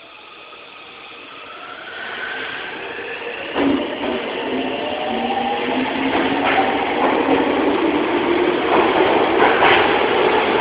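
Tokyo Metro 07 series subway train departing: its traction motor whine climbs in pitch in several tones as it accelerates, growing steadily louder. There is a sharp knock about three and a half seconds in and a few lighter knocks from the wheels later on.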